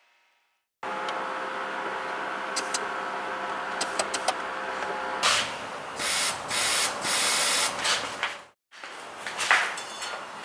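Compressed air from a vehicle airline hissing: a steady hiss with a faint hum, then several louder blasts of air in the second half. The air cuts off briefly and starts again, with more blasts near the end.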